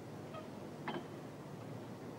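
Faint steady background hiss and hum with one short click about a second in.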